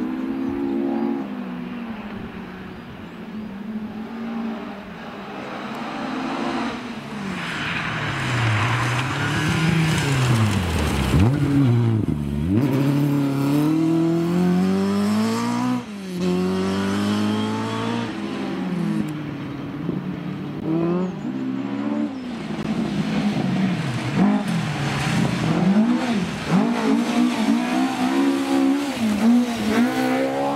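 Historic rally car engines driven hard on gravel, passing one after another: the engine note climbs through each gear and drops sharply at every change, swelling as the cars come closer.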